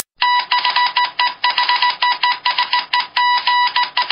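Electronic beeping sound effect on an end card: a fast, uneven series of beeps all on one steady pitch, like a telegraph tapping out code.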